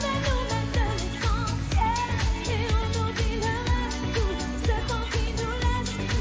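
Live pop song: a woman singing lead into a microphone over a steady electronic dance beat.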